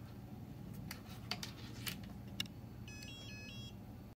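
A few light clicks from handling the small plastic receiver and its leads, then, near the end, a short electronic beeping tune of several quick tones stepping between pitches.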